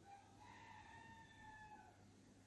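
A faint, drawn-out animal call lasting nearly two seconds, its pitch stepping up slightly early on and dropping away at the end.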